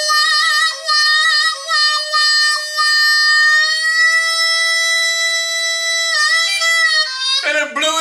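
Blues harmonica played solo into a microphone with cupped hands: quick warbling notes, then one long held note that bends slightly upward before breaking back into warbles. A man's singing voice comes in near the end.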